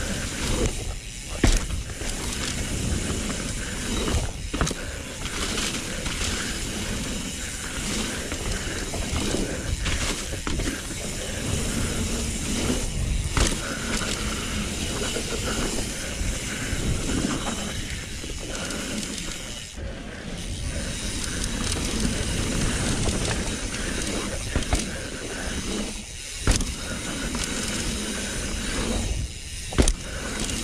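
Mountain bike riding over a dirt pump track: tyres rolling on dirt and dry leaves, the rear hub's freewheel ratcheting while coasting, and steady rushing noise on the camera, with a few sharp knocks as the bike lands over the rollers.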